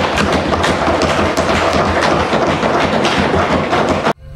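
Members thumping and knocking on their wooden desks in approval, a dense, irregular patter of many knocks a second, the parliamentary equivalent of applause.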